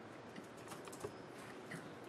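Faint typing on a laptop keyboard: a few scattered keystrokes as a short command is entered at a terminal.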